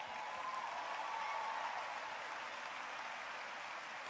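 Audience applauding steadily after a point in a sermon.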